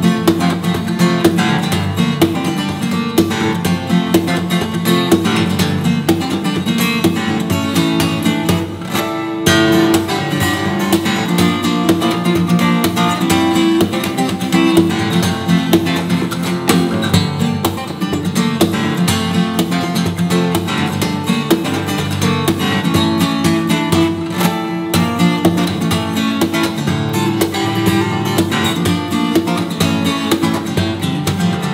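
Solo steel-string acoustic guitar played fingerstyle: a busy, continuous run of plucked notes over bass notes, with a brief lull just before nine seconds in and a strong struck chord right after.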